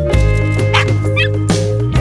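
Background music, with a small dog giving two yaps over it: a short bark a little under a second in and a higher, wavering yip just after.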